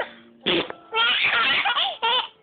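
Baby laughing in breathy bursts: a short one about half a second in, then a longer run of laughter.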